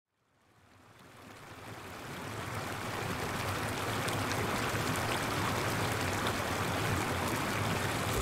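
Flowing brook: a steady rush of running water that fades in from silence over the first few seconds, then holds level.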